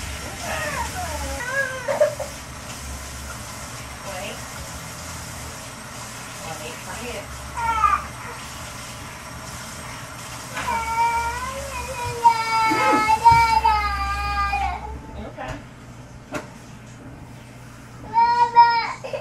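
A toddler whining and crying in high, wavering calls during a hair wash at a kitchen sink, loudest about 11 to 15 seconds in. Under the cries the kitchen tap runs with a steady hiss that cuts off suddenly about 15 seconds in.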